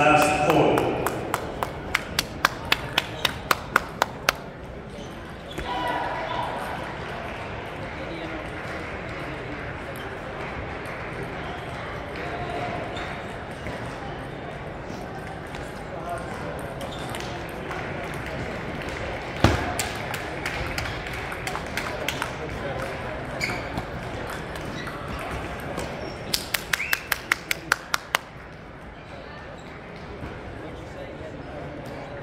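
Table tennis ball bouncing: a quick run of about a dozen light ticks over the first four seconds, one loud knock midway, and another fast run of ticks near the end. Steady chatter of voices from the hall runs underneath.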